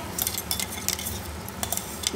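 Steel spoon scraping and clinking against a steel kadhai as spinach purée is stirred into a masala of peas, with a few sharp clicks over a faint sizzle from the hot pan.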